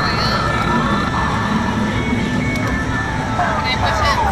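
Arcade ambience: overlapping electronic game music and jingles from many machines, with steady electronic tones, over background crowd chatter.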